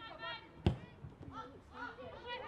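A football kicked once, about two-thirds of a second in: a single sharp thump, the loudest sound here, among players' calls.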